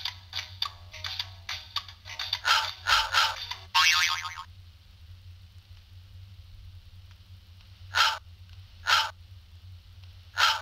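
Soundtrack of a Flipnote Studio animation playing through a Nintendo DSi's small speaker: a quick run of clicks and short pitched sounds over the first four and a half seconds, then three short separate sounds about a second apart near the end. A steady low hum runs underneath.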